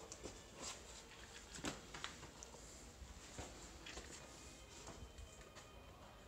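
Faint, irregular footsteps and scuffs of shoes on wet rock steps in a cave, with a few sharper clicks of feet and hands on stone.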